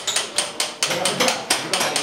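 Hand tools striking and chipping at masonry walls: a rapid, irregular run of sharp knocks and clicks, several a second.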